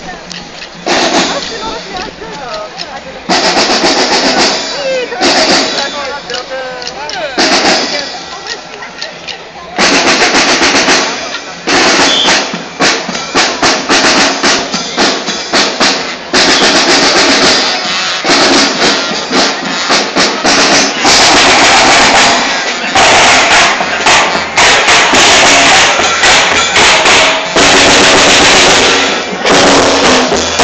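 Marching-band snare and bass drums beating in a street parade, with crowd voices mixed in. The drumming is patchy at first and becomes continuous and very loud about ten seconds in, loud enough to hit the recording's ceiling.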